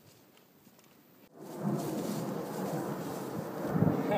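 A faint first second, then from a cut about a second in a steady low rumble and rustle: wind buffeting the microphone outdoors.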